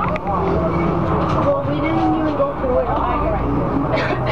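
Inside a Neoplan AN440 diesel city bus under way: a steady low engine drone and road rumble, with indistinct passenger voices over it.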